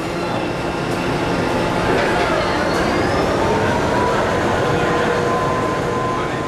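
Steady machinery rumble of a container ship lying close alongside the lock wall, with a thin whine that rises a couple of seconds in and then holds.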